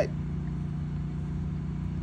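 A steady low mechanical drone that holds the same pitch and level throughout.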